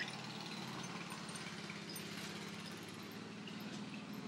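Riding lawn mower's small engine running steadily, heard faintly, with a brief click right at the start.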